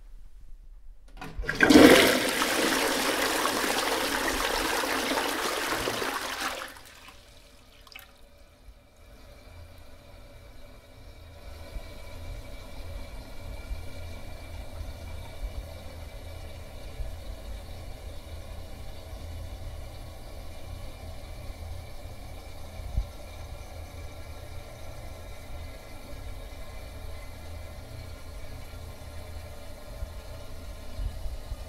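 Toilet flushing: a sharp start, then a loud rush of water for about five seconds that cuts off. A much quieter steady low hum with faint running water follows.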